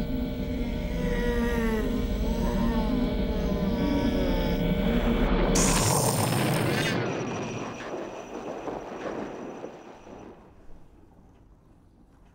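Eerie electronic film sound design: warbling, gliding tones over a low hum. About five and a half seconds in, a sudden loud rush of hiss cuts in and then fades away over the next few seconds.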